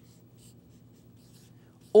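Faint strokes of a marker pen writing on a white writing surface.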